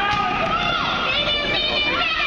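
Several raised voices shouting and calling at once in a gym during a basketball game, over steady crowd noise.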